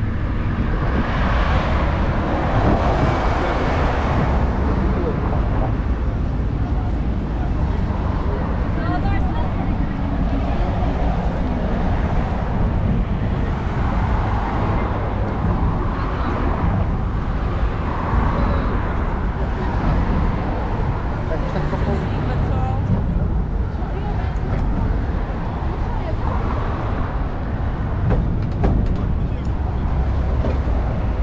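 Busy street ambience: steady road-traffic noise from passing cars and buses, mixed with the chatter of passersby walking close by.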